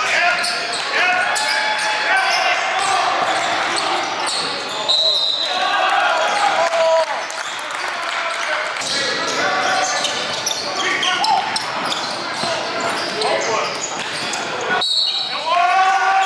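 A basketball dribbling and bouncing on a hardwood gym floor, with players' voices calling out, all echoing in a large gym.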